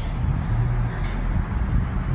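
Low, steady engine rumble of a nearby road vehicle, with some wind noise on the microphone.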